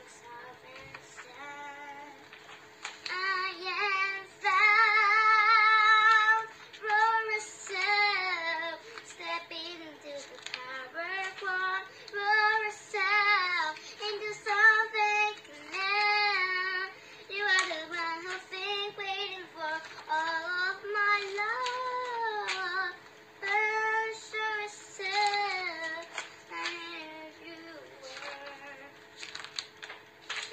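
A young girl singing in phrases, with a long held note about five seconds in. Book pages rustle and click now and then as they are turned.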